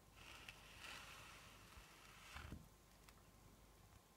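Near silence: quiet room tone with faint, soft noises in the first two and a half seconds and a soft low bump just before they stop.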